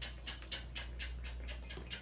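Rapid, crisp crinkling and rustling of tissue packing paper in a sneaker box as the shoe is lifted and handled, a quick run of small crackles.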